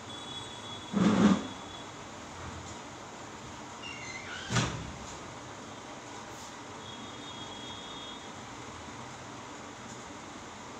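Steady hiss from a live microphone with two short handling bumps on a handheld microphone, about a second in and again about halfway through, as it is lowered from the mouth.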